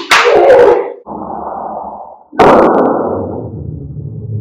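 An open-handed slap across the face, then the slap played again slowed down: a sharp hit about two and a half seconds in, followed by a deep drawn-out smack that slowly fades.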